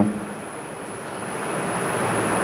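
Steady rushing background noise without speech, slowly growing louder, with a faint thin high whine throughout.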